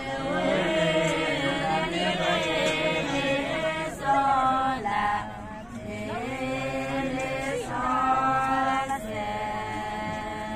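Several voices singing a song together unaccompanied, in long held chant-like notes, with men's and women's voices overlapping and short pauses between phrases.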